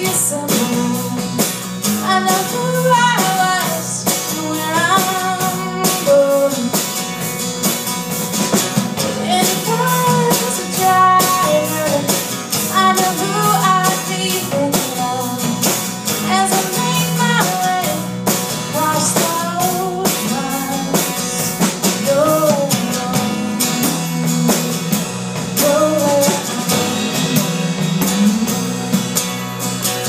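Live folk-rock song: an acoustic guitar strummed over a steady electric bass line, with singing at times.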